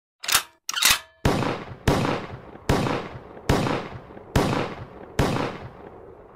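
Logo-intro sound effects: two quick sharp bursts, then six heavy impact hits about 0.8 s apart, each trailing off in a long reverberant decay.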